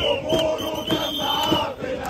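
A crowd of football supporters chanting together, loud and continuous, over rhythmic hand-clapping.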